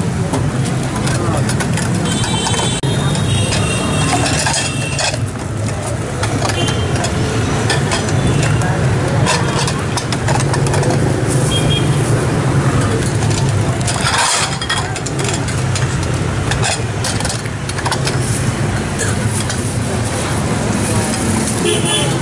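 Steady street traffic noise with voices in the background, and scattered clinks of a ladle against the pot and cups as soup is served.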